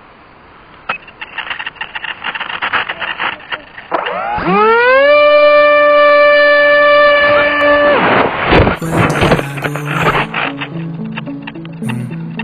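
Electric motor of a ZOHD Rebel GT model plane spooling up with a quickly rising whine about four seconds in, holding one steady pitch at full throttle for about three seconds, then cutting out. Irregular rattling clicks come before the run-up; noisy clatter follows the cut-off, then background music with stepped low notes.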